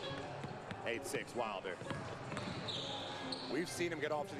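Basketball dribbled on a hardwood gym floor, a series of separate bounces, with faint voices in the background.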